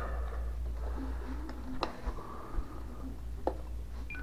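Handling of a Spektrum NX radio transmitter held in both hands, with two sharp clicks, one nearly two seconds in and one about three and a half seconds in, over a steady low hum.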